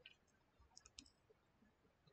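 Near silence with a few faint, short clicks about a second in.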